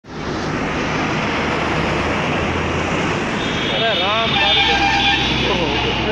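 A heavy truck's engine and tyres running close by on the highway, a loud steady noise with a low hum under it, with people's raised voices over it in the second half.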